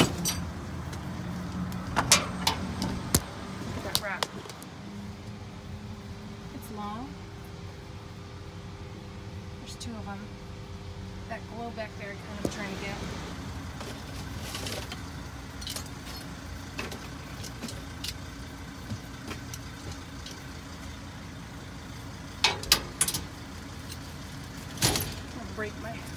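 Dumpster contents being handled and rummaged with a plastic reacher-grabber: scattered knocks, clacks and rattles, in clusters a couple of seconds in, around the middle and near the end, over a steady low hum.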